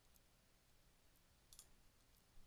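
Near silence with a few faint computer mouse clicks, the loudest a quick double click about one and a half seconds in, as a dropdown option is selected.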